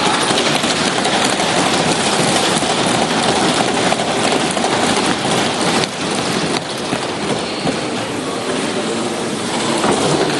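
Many lawmakers thumping their wooden desks in a dense, continuous din of rapid knocks, the parliamentary applause that welcomes the Finance Minister as she rises to present the budget. It eases a little about six seconds in.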